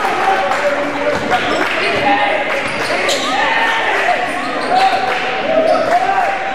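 Basketball game on a hardwood gym floor: the ball being dribbled, with short sneaker squeaks and players' and spectators' voices echoing in the gym.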